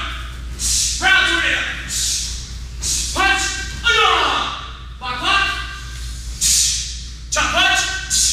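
Martial-arts students shouting short calls in time with the moves of a form, about one a second, each call falling in pitch, with short hissing bursts between some of them.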